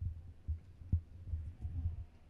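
Handling noise from a handheld microphone being passed from one person to another: several low, dull thumps and rumbles over a faint hum.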